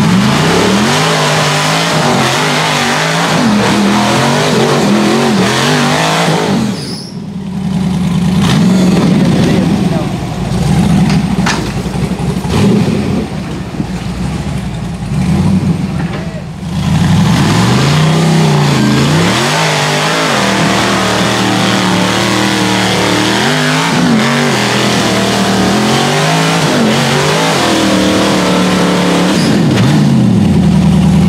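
A rock buggy's engine revving up and down in repeated throttle bursts as it climbs. It eases off for several seconds about a quarter of the way in, then revs hard again.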